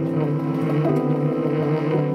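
A tenor saxophone holds one long low note with a slight waver, over piano accompaniment.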